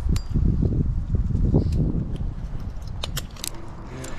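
Climbing hardware clinking a few times as the climber handles rope and metal rigging at the tree trunk, with the clicks bunched near the end, over a low rumble.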